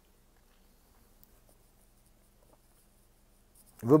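Near silence: room tone with a faint low hum and a few soft clicks, about a second in and again midway.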